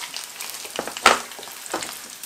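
Sea bass fillets slow-frying in oil in a non-stick pan, a faint steady sizzle, with a single sharp knock about a second in.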